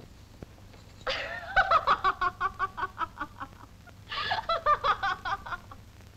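A woman laughing in two long bouts of rapid, pulsing laughter, the first starting about a second in and the second near two-thirds of the way through.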